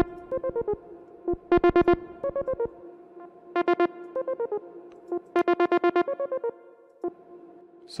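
Synthesizer arpeggio melody playing back, with clusters of quick repeated notes about every two seconds, layered with a looped resampled atmospheric pad.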